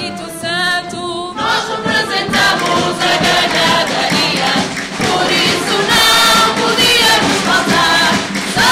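A woman sings solo with wide vibrato. About a second and a half in, a large mixed chorus of men and women comes in, with guitars accompanying.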